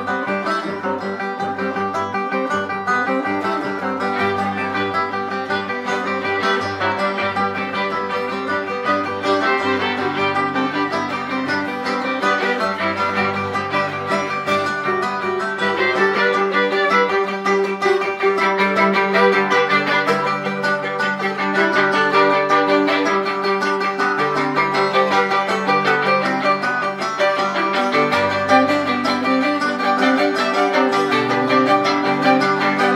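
Live acoustic string band playing an instrumental passage: strummed acoustic guitars, plucked upright bass and fiddle.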